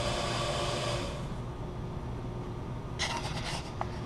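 Steady low machine hum with a hiss that dies away about a second in. Near the end comes a short burst of rubbing and rustling and a small click, handling noise from someone reaching for the camera.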